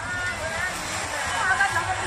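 Several voices talking over one another, with music in the background.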